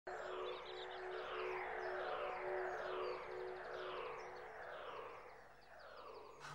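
Electronic sound effect or music of repeated falling sweeps, about one every 0.8 seconds, over a steady held tone. It fades out near the end.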